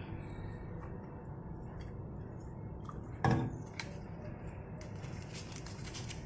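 A wooden spoon working in a pot of broth on the stove, with faint light knocks and one brief louder sound about three seconds in, over a steady low background noise.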